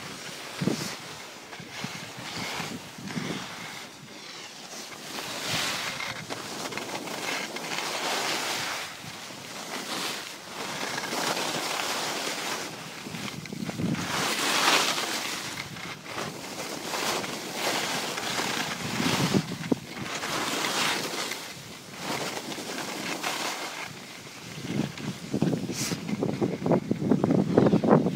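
Skis scraping and hissing over hard-packed piste snow, swelling and fading with each turn, with wind rushing over the microphone.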